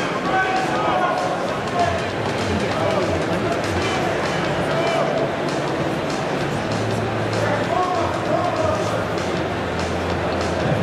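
Music playing over an arena's public-address system, with crowd chatter underneath.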